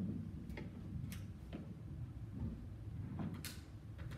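A handful of light, irregular clicks and knocks of handling noise as a performer settles onto a wooden stool with an oud and positions the microphone stand.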